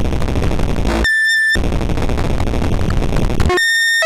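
Harsh noise from a Eurorack modular synthesizer patched from Mutable Instruments Stages, Tides and a Non-Linear Circuits Neuron. The dense noise cuts out twice for about half a second, about a second in and again near the end, and a high, steady pitched tone sounds in its place.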